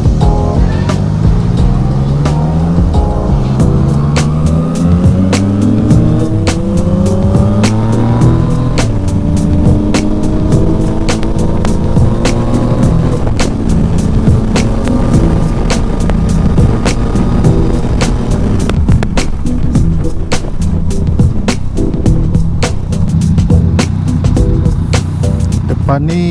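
Yamaha Tracer 900 GT's three-cylinder engine with an Akrapovič exhaust, accelerating hard through the gears. Its pitch climbs and drops back at each upshift over the first half, then it runs at a steadier speed. Background music with a steady beat plays over it.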